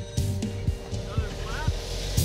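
Low, steady rumble of a Jeep engine crawling slowly while it tows an off-road camper trailer over a rock ledge, with faint music underneath.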